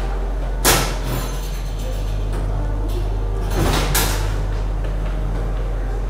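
Two short, airy sucking noises through a plastic drinking straw, one about a second in and a longer one about four seconds in, as a very thick mango smoothie is drawn up. A steady low hum runs underneath.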